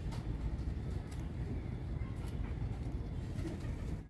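Steady low background rumble, with a few soft rustles of green fodder as young goats pull at it and eat.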